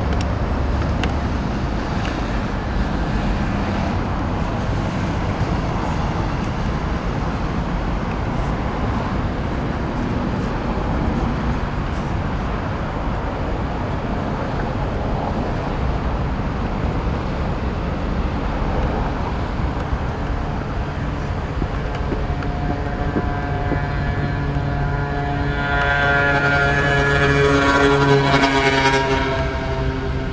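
Road traffic running steadily. In the last several seconds a vehicle with a steady humming engine comes close and is loudest a few seconds before the end, with a rush of hiss at its peak.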